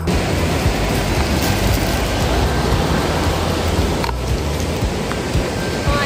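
Steady rushing of a shallow mountain river flowing over rocks, with background music playing under it.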